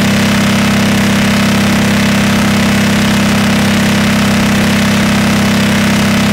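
Speedcore track: a loud, steady, distorted low electronic buzz with no separate beats, no melody and no voice.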